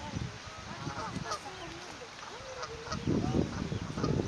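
Mute swan and her newly hatched cygnets calling softly: a run of short rising-and-falling peeps and chirps. Near the end a louder low rumble comes in.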